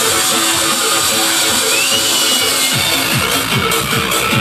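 Loud electronic dance music from a DJ set over a PA system; about three seconds in a heavy kick drum beat comes back in at roughly two beats a second.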